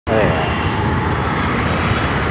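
Steady rumble of city road traffic and wind heard from a moving two-wheeler, with a brief voice-like sound at the very start.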